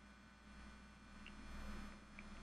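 Near silence: room tone with a faint, low, steady hum.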